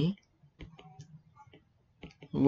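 Stylus strokes on a pen tablet while writing by hand: a scattered series of faint clicks and taps as letters are drawn.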